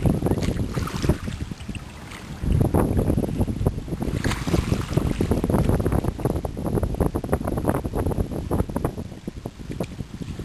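Wind buffeting the microphone in gusts, over small waves lapping in shallow water on a pebbly shore. The gusts ease briefly about two seconds in, then pick up again.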